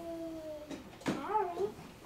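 A child's wordless voice holds a long note that slowly falls in pitch, then breaks into a short wavering whine about a second in.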